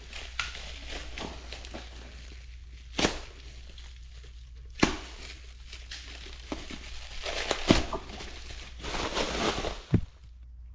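Clear plastic stretch wrap crinkling and rustling as it is pulled and torn off a new tire, with a few sharp crackles standing out and a louder rustle near the end.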